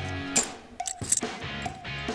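Background guitar music, with a few sharp metallic clinks as metal fidget spinners are dropped into a crucible, the loudest about half a second and a second in.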